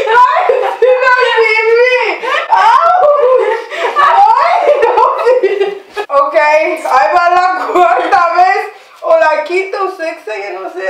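Women laughing and squealing almost without a break, with a short dip about six seconds in.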